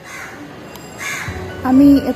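Two short bird calls about a second apart, then a woman begins speaking near the end.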